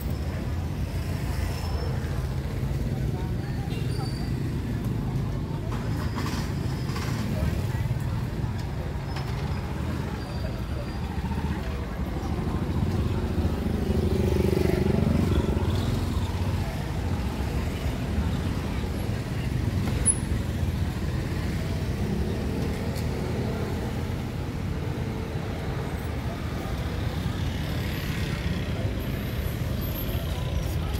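Street ambience of motor scooters and motorbikes riding past, with indistinct voices of people around. One vehicle passes closer and louder about halfway through.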